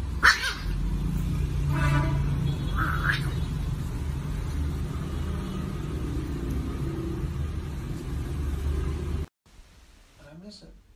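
A steady low rumble with a few short, high-pitched puppy squeaks in the first three seconds. The sound cuts off suddenly about nine seconds in.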